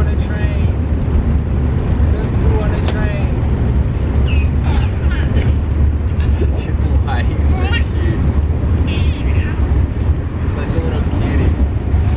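Steady low rumble of a moving passenger train heard inside the carriage, with a baby's short high squeals and adults' cooing and laughter over it.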